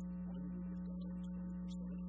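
Steady electrical mains hum in the microphone audio: a constant low buzz with a stack of overtones, unchanging throughout.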